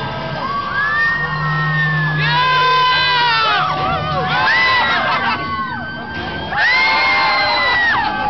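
Several riders screaming on a drop-tower ride, long high screams overlapping one another and wavering in pitch, with the loudest bursts about two seconds in and again near the end, as the ride car drops.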